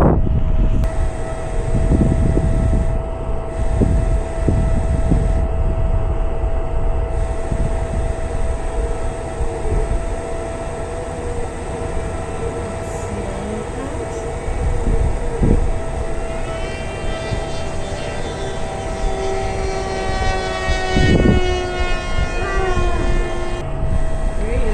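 Wind rumbling on the microphone under a steady high hum. From about two-thirds in, the whine of an electric RC plane's motor and propeller rises in pitch as it comes in for a low pass, then drops in pitch as it goes by near the end.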